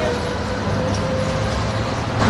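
Steady low background rumble with a faint constant hum, of the kind made by nearby vehicle traffic.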